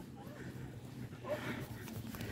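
Quiet outdoor ambience: a low, even background hum with faint, distant voices.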